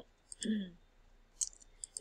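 A woman clears her throat with a short falling vocal sound, then a few light clicks near the end.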